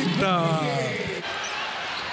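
A male sports commentator's long drawn-out call, falling in pitch and fading out about a second in. Under it runs the arena noise of a basketball game, with a few faint knocks of the ball bouncing on the hardwood court.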